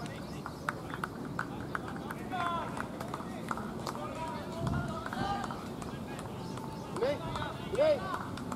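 Distant, indistinct voices and short calls from people on an open ground, with a few faint clicks in the first couple of seconds.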